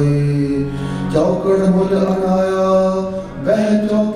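Sikh kirtan: a man singing long held notes over harmonium, the pitch stepping up about a second in and again near the end.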